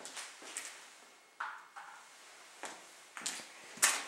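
Irregular footsteps and knocks on a floor as someone moves about a small room, with two crisp knocks in the middle and a sharper, louder knock near the end.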